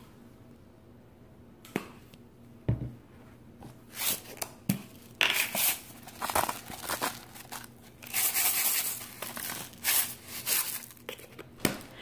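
Intermittent crinkling, clicking and rustling kitchen handling noises as salt and sesame oil are added to a glass bowl of blanched spinach, with a longer rustle about eight seconds in.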